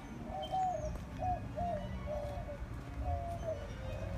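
A dove cooing: a quick run of short, low notes, about two a second, some dropping slightly in pitch at the end.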